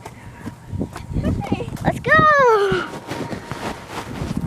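A child's high-pitched cry, held for under a second about two seconds in and sliding down in pitch, over scattered knocks and rustling from the phone being handled.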